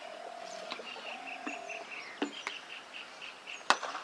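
Birds calling with repeated buzzy trills, then a single sharp crack near the end as a cricket bat hits the ball.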